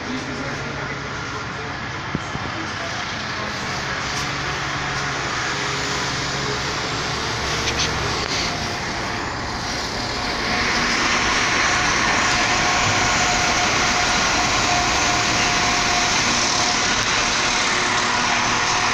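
A passenger train passing close by a station platform: its running noise grows loud about ten seconds in and holds steady as an even rush with a steady whine over it. Before that, a low hum and the murmur of people waiting on the platform.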